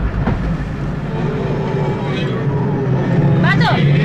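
Film soundtrack with a steady low rumble of a moving vehicle, and a brief voice-like sound near the end.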